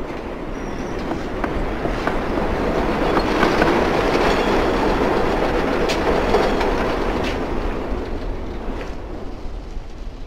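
An elevated train passing close by, its wheels clattering over the track, with a few sharp clacks. It builds up loud through the middle and fades toward the end, the passing train shaking and rattling the room.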